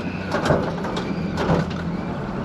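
Steady low engine and road drone inside a moving vehicle's cab, with a few short knocks.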